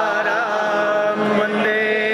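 A devotional Hindu aarti hymn chanted in song, a voice holding long notes with small turns in pitch over a steady low tone.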